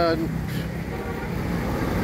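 A man's drawn-out word ends just after the start, then a pause filled with a steady low rumble of outdoor street traffic.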